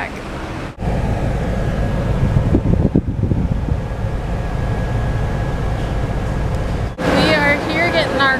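Low, steady rumble inside a car's cabin, with wind buffeting the microphone. It cuts in abruptly about a second in and cuts off about a second before the end, where a woman's voice returns.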